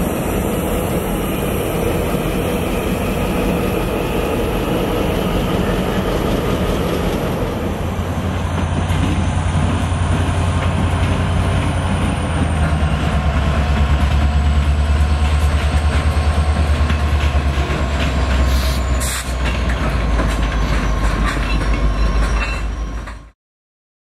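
Diesel locomotives rolling past: first an RJ Corman GP10 switcher moving slowly, then Norfolk Southern road locomotives going by with a deep, steady engine rumble that grows heavier in the second half. The sound cuts off suddenly just before the end.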